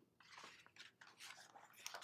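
Faint rustle and soft ticks of sketch-journal paper pages being handled and turned.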